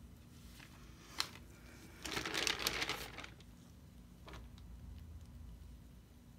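A sharp click about a second in, then about a second of crinkling as the wet canvas is handled and picked up from the paper-covered work table.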